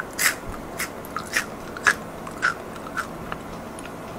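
Someone biting and chewing crisp shredded dried squid strips, a series of sharp, separate crunches in an uneven rhythm.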